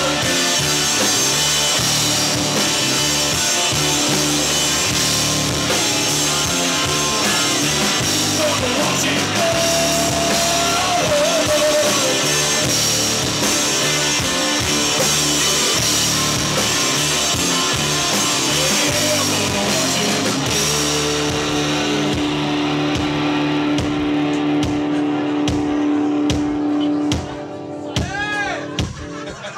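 Live rock band playing an instrumental passage on drum kit and electric guitar, with a lead line that bends in pitch partway through. Toward the end the cymbals thin out and one low note is held for several seconds before the level drops.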